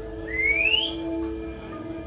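A single loud whistle from someone in the audience, gliding upward in pitch over about half a second. Underneath it, dark ambient music holds sustained low tones with no beat.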